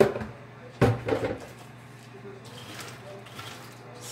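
Kitchenware knocking on a counter: two sharp knocks, the first right at the start and the second about a second in with a short rattle after it, then faint handling noise.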